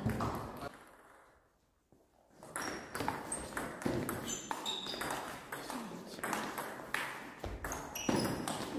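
Table tennis rally: the ball clicking off the bats and the table in a quick, uneven series. It starts about two and a half seconds in, after a brief near-silent gap.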